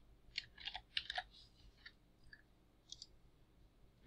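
Faint computer keyboard keystrokes and mouse clicks: a quick run of clicks in the first second and a half, then a few scattered single clicks.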